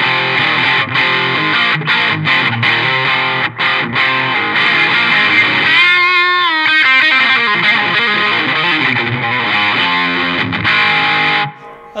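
Epiphone Les Paul Classic electric guitar played through a TC Electronic Spark Mini Booster into an Electro-Harmonix OD Glove overdrive pedal: overdriven rock lead lines, with a bent note and wide vibrato about halfway through. The playing stops just before the end.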